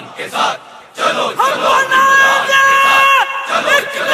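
A rally crowd chanting and shouting, with one long, high held shout through the middle and another rising shout near the end.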